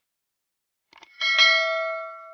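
Two faint mouse-click sound effects, then about a second in a bright bell ding that rings out and fades: the notification-bell chime of a YouTube subscribe-button animation.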